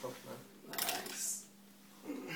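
Metal clicks and scraping of hand tools on the parts of an Ilizarov external fixator frame, in a short burst about a second in.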